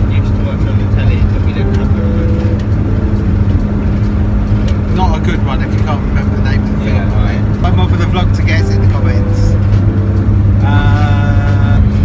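Steady low drone of a van's engine and road noise heard inside the cabin while driving, with brief bits of voices over it.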